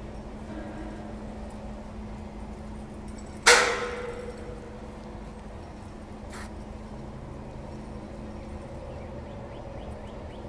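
Toyota forklift engine running with a steady hum while it holds the steel arched frame over the trailer. About three and a half seconds in, a single sharp metal clang rings briefly, and a faint click follows a few seconds later.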